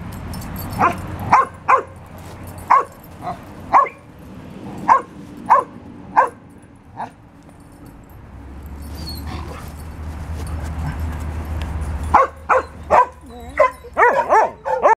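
A dog barking in play: a string of short, high yips, about a dozen over the first seven seconds, then after a pause of a few seconds a quick run of yips near the end.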